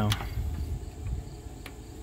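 Crickets chirping steadily in the background, with a low irregular rumble and a couple of faint clicks as the camera is moved around the engine bay.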